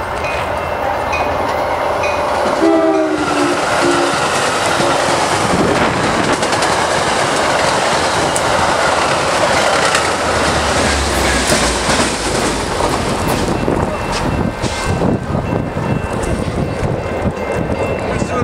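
Metra commuter train with MP36PH-3C diesel locomotive 422 running through a station at speed without stopping: the locomotive horn sounds a chord for about two seconds, starting about two and a half seconds in. Then comes the steady rush of the bilevel cars passing, with wheels clicking over the rail joints in the second half.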